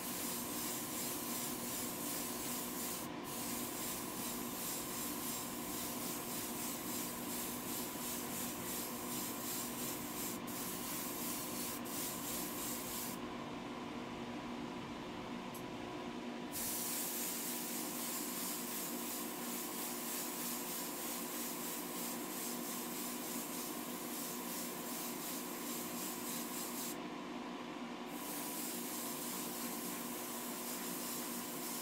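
Airbrush spraying paint with a steady hiss over the hum of a spray booth's extraction fan. The hiss stops for a few seconds near the middle and again briefly near the end.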